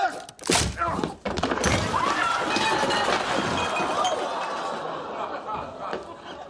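A crash as a body falls into a laid dinner table: two heavy thuds about half a second and a second and a half in, with dishes and food clattering and breaking. A long stretch of studio-audience laughter follows and fades out.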